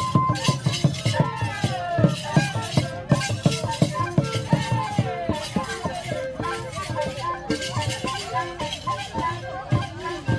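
Traditional dance music: drum strokes with shaken rattles keeping a steady rhythm, and a sliding melody line over them.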